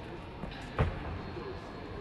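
Indoor track arena background noise with one low thump a little under a second in.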